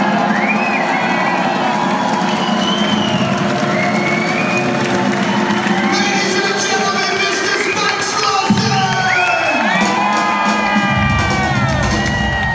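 Concert crowd cheering and whooping over the band's held notes as a song finishes; deep bass notes come in near the end.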